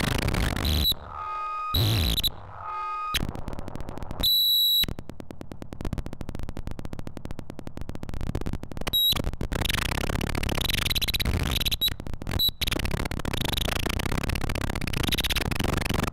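Harsh electronic noise from homemade DIY synthesizers, jumping abruptly between dense noise, sudden cut-outs and a high whistling tone. A fast stuttering pulse sets in about five seconds in and runs for a few seconds before the dense noise returns.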